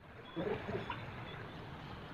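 Faint outdoor background noise, with a few brief faint sounds about half a second in and again near one second in.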